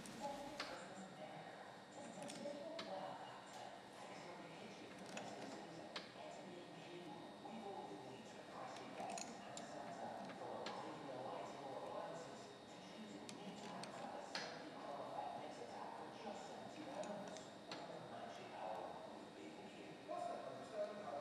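Faint metallic clicks and ticks of a small pipe wrench being worked on a threaded elbow fitting, screwing it onto the taped end of a steel pipe.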